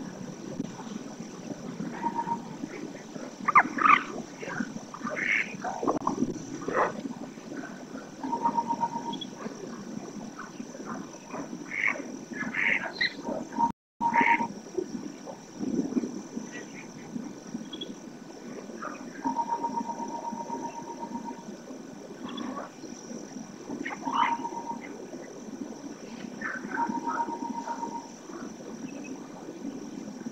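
Wetland ambience with scattered animal calls, including a short rattling trill repeated four times, and a brief dropout in the sound about halfway through.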